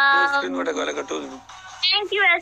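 A woman's voice holding one long, steady, high note, then trailing off into a quieter, wavering vocal sound.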